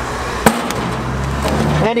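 A single sharp knock about half a second in, as a tossed object lands on a hard surface during a trick attempt, with a vehicle engine's steady low hum around it.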